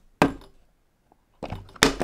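A plastic precision-screwdriver kit case set down on a wooden tabletop with a single knock, then a few sharp clicks near the end as the case's lid is snapped open.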